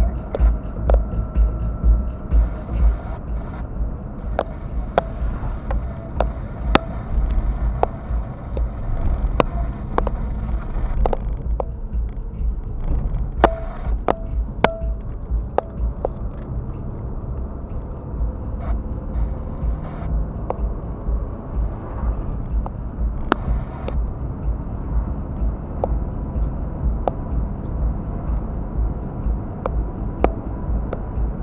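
A car driving, heard from inside the cabin: a steady low rumble of engine and road noise, with scattered short knocks and clicks.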